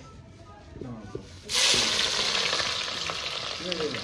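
Raw onions dropped into a pot of very hot palm oil, setting off a sudden loud sizzle about one and a half seconds in. The sizzle keeps going steadily, easing a little.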